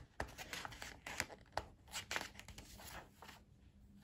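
Paper pages of a textbook being handled and turned: a run of short, soft rustles and taps that die away about three seconds in.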